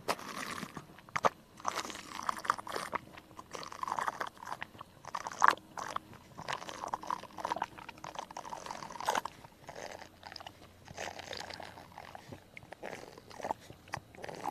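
A goat slurping and lapping a drink from a hand-held plastic cup: irregular wet slurps and mouth smacks, loudest about five and nine seconds in.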